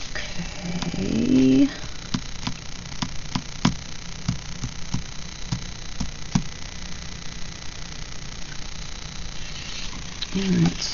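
A short hummed note from a woman's voice about a second in. Then about a dozen light, separate clicks and taps as stickers are pressed and smoothed onto a paper planner page by hand.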